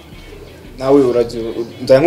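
A man speaking, starting about a second in after a brief lull.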